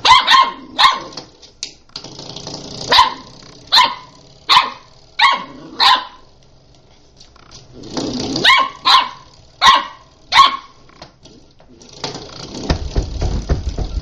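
A puppy barking in short, sharp yaps: a run of about eight, a pause, then about five more. Near the end there is a rising rumbling, rustling noise.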